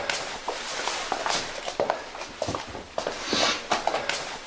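Footsteps with small knocks and rustles as someone comes in through a door in a small room; a short breathy sound comes a little after three seconds.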